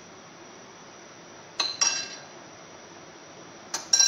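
Crockery and utensils clinking: two pairs of sharp clinks with a short ringing, about a second and a half in and again near the end.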